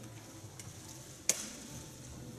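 Quiet room tone with a faint steady hiss, broken by a single sharp click a little past halfway.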